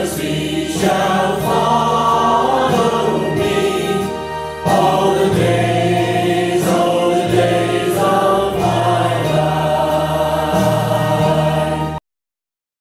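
Choral music, voices singing sustained notes over a steady bass accompaniment, stopping abruptly at the end.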